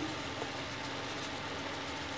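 Quiet, steady hiss with a faint low hum from a pan of cabbage cooking on the stove.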